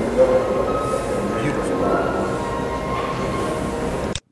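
Camcorder soundtrack of a hotel lobby: a steady din of background voices and room noise.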